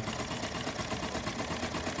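Juki LK-1900BN industrial bar-tacking sewing machine running steadily, stitching a spot tack through thick layers of drapery fabric with a fast, even rhythm of needle strokes.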